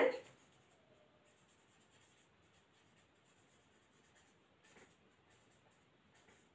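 Marker pen writing on a whiteboard: faint, intermittent scratching strokes.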